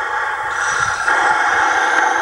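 Harsh, hissing noise amplified through megaphones, cutting in and stopping abruptly.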